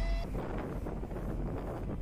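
Wind buffeting the microphone on the open deck of a moving ship, a steady low rumbling rush with the sea washing along the hull underneath.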